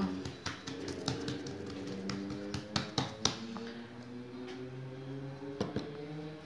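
Fingertips pressing and dimpling a ball of yeast dough flat on a plastic-wrapped board: a run of light taps and clicks, densest in the first three seconds, with a few more near the end.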